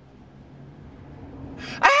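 A low, steady hum with a faint breathy noise that slowly grows. Near the end a man's voice breaks in suddenly, loud and high-pitched, in a strained falsetto mimicking a woman.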